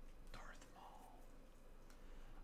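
Near silence: room tone, with a faint brief rustle about half a second in.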